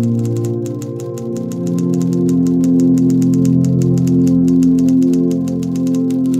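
Typewriter keys clacking in a rapid, steady run over soft, sustained music chords.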